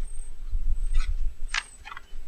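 Low rumble of handling on the microphone with a few short rustles, one at about a second and two more near a second and a half, as the camera and plants are handled during setup.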